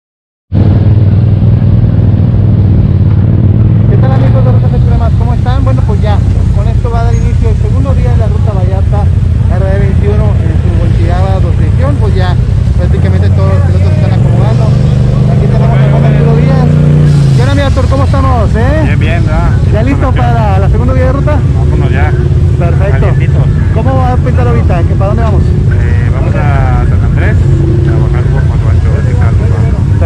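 Several off-road side-by-side UTV engines idling in a loud, steady low drone, with voices chattering over them. About halfway through, one engine's pitch climbs for a few seconds, then drops back.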